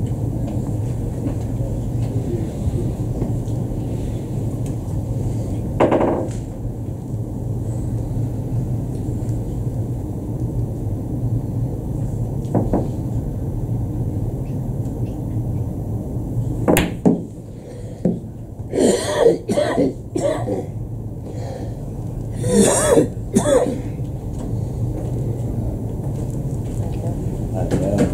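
Billiard shot on a five-pins table: sharp clicks of the cue striking the ball and the balls hitting each other, about seventeen seconds in. A few short bursts of coughing and throat clearing come after it, over a steady low hum of the hall.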